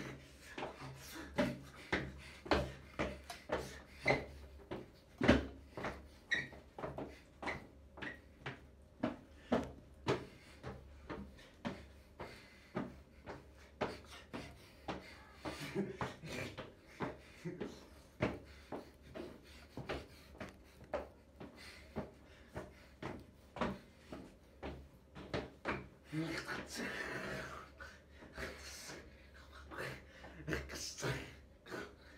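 Beatboxing: a long run of sharp mouth-made drum hits and clicks at about two a second, uneven in rhythm, with laughter near the end.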